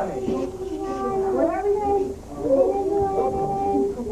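Voices singing, with two long held notes: one near the start and another beginning about two and a half seconds in.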